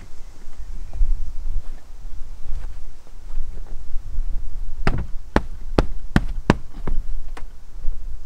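Foam mattress sections being handled and laid onto a plywood bed platform in a camper van, over a steady low rumble. In the second half comes a quick run of about six sharp knocks.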